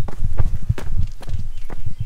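Footsteps walking down a stone-slab trail strewn with loose stones, about two or three steps a second.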